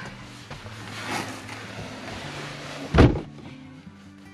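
A car door shutting with a single heavy thump about three seconds in, after the rustle of someone climbing into the seat. Quiet background music runs underneath.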